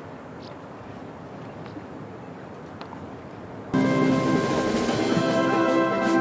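Low open-air background with a few faint ticks. About two-thirds of the way in, a brass band suddenly comes in much louder, playing slow, held chords.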